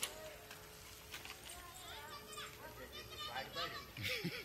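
Faint, indistinct voices in the background, with a few short high calls in the second half.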